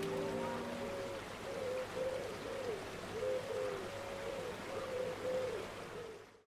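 Background music fading out within the first second, leaving a bird cooing over and over in short, evenly spaced calls over a steady hiss.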